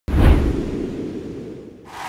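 A logo-sting sound effect: a sudden deep boom with a swoosh on top, dying away over just under two seconds.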